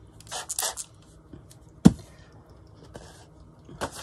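Hand pump spray bottle misting water onto paper: two short hissing spritzes in quick succession in the first second. About two seconds in comes a single sharp knock, the loudest sound.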